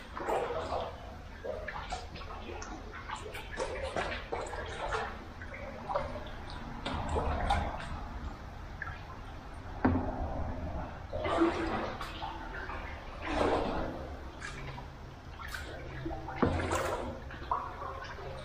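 Kayak paddle strokes, with water splashing and dripping off the blades at irregular intervals, echoing inside a culvert tunnel.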